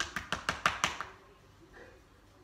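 Hands patting a Boerboel's body in a quick run of taps, about six a second, that stops about a second in.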